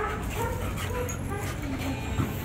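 American bully dog whimpering in a series of short, arched, high cries.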